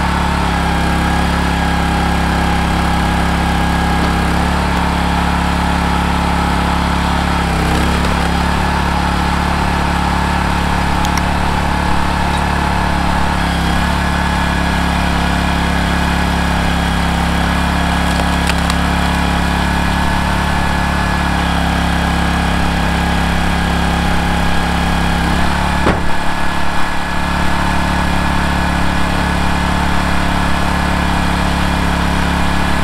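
Black Diamond 50-tonne log splitter's petrol engine running steadily while the splitter is worked, with its note wavering briefly twice and a few light knocks.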